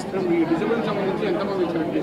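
Speech only: a woman talking into news microphones, drawing out one long held syllable, with chatter in the room behind.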